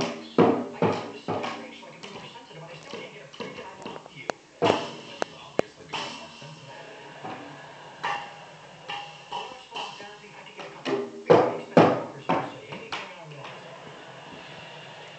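A child's toy drum kit struck with drumsticks in irregular clusters of hits with short pauses between them. A small cymbal rings on after some of the strikes.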